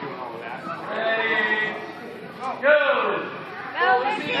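Young children's high-pitched voices laughing and squealing, with one held call a second in and a louder burst of squeals near three seconds.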